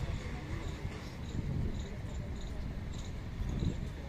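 A series of short, high chirps, a couple each second, from a small bird or insect, over a steady low outdoor rumble.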